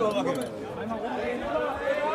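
Crowd of football fans chattering in the open, many overlapping voices with no single speaker standing out.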